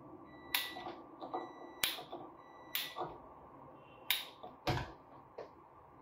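A gas stove igniter being clicked to light the burner under a tawa: a series of sharp clicks, about one a second.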